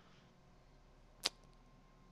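Near silence with one brief, sharp click just over a second in.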